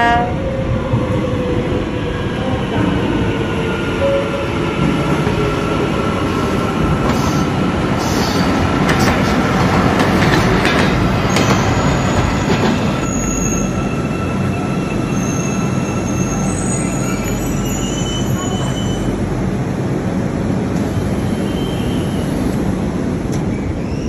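Metro train running into the station with a steady rumble. A long high squeal runs through the first half, and shorter, higher squeaks come later.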